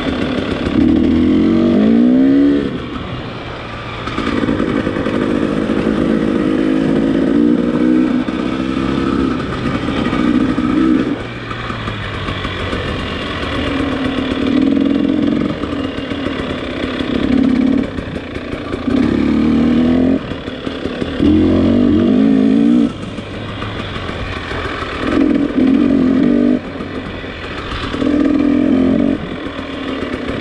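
Dirt bike engine under way on a trail, the throttle opening and closing every couple of seconds so the engine note rises in pitch and falls back again and again. It is picked up by a microphone tucked inside the rider's helmet.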